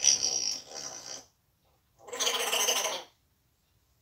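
African grey parrot vocalizing: two calls about a second long each, the first at the very start and the second about two seconds in.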